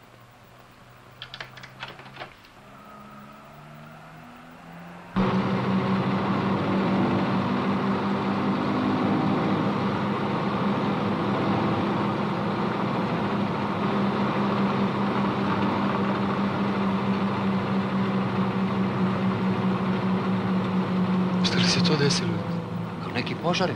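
Bus engine and road noise inside the passenger cabin: a steady, loud drone that cuts in abruptly about five seconds in and holds evenly. Before it there is a quieter low hum with a few clicks.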